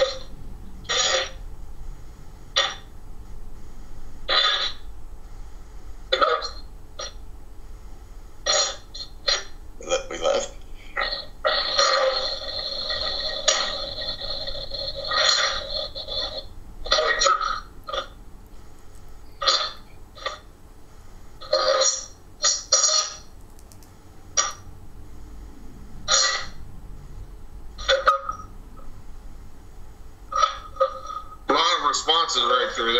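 Ghost box (spirit box) sweeping through radio stations: short, choppy bursts of radio sound every second or so, with a longer stretch of about five seconds of steady held tones near the middle. It is played as the supposed spirits' answer to a question just put to them.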